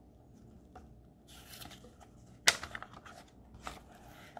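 A page of a thin picture book being turned by hand: quiet paper rustling, with one sharp flap about two and a half seconds in as the page goes over, then a few small ticks.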